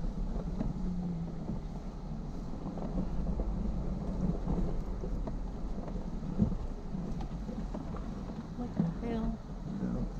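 Jeep Wrangler JKU Rubicon crawling downhill at walking pace over loose rock and gravel: a steady low engine and driveline rumble, with small stones crunching and popping under the 35-inch tires and one sharper knock about six and a half seconds in.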